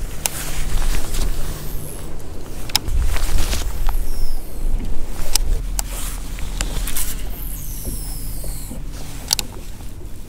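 Steady low rumble of boat and wind noise on a bass boat, with a faint hum at times. Over it come several sharp clicks and knocks from handling the baitcasting rod and reel as a swim jig is worked along the bottom.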